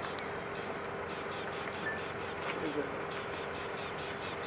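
High-pitched chorus of insects pulsing about four times a second, over a faint steady low hum.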